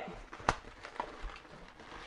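Light handling of latex modelling balloons, with a sharp click about half a second in and a fainter one about a second later.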